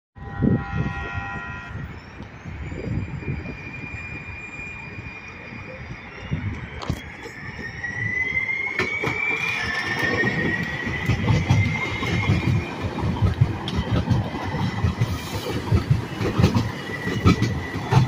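San Diego Trolley light-rail train running past close by. A brief horn sounds at the start, then the wheels rumble and clack over the rails under a high tone that rises in pitch through the middle.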